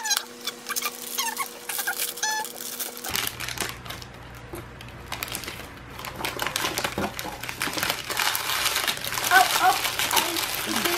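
Plastic packaging crinkling and rustling in a stream of short clicks as an action figure is unpacked from its cardboard box, with brief voice sounds at the start and near the end.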